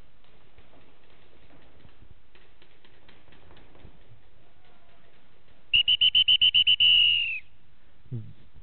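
Electronic flag-base beeper sounding about two-thirds of the way in: a rapid run of about a dozen short, high beeps, roughly ten a second, then one longer beep that drops away. It is the base's signal that the flag has been brought in and captured. Before it, faint scattered clicks over a low steady background.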